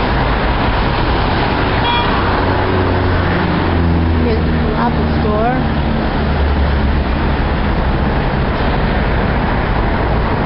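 Steady city road traffic: cars and other motor vehicles driving past with engines running, and a brief high beep about two seconds in.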